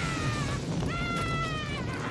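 High-pitched screaming from a man on fire: two long cries that fall in pitch, the second longer, over a low rumble.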